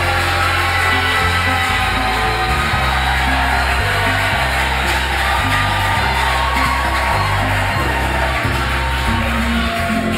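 Live gospel band music: sustained keyboard chords over a bass line that steps from note to note, with crowd noise under it.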